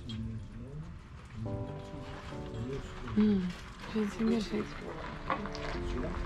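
Voices talking over background music with held notes.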